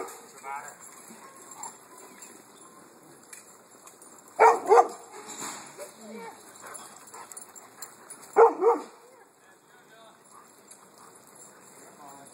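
A dog barking: one bark at the start, then two quick barks together near the middle and two more about four seconds later.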